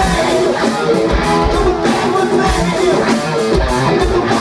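Rock band playing live through the stage PA, electric guitars to the fore over bass and drums.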